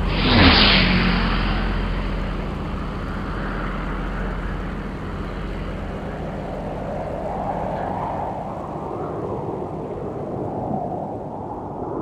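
Produced title sound effects: a loud whoosh and boom with a falling pitch about half a second in. A low steady rumble follows and slowly fades away.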